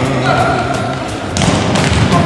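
Background music from a Croatian-language song during a passage without vocals: sustained instrumental notes, then a louder run of drum beats comes in about one and a half seconds in.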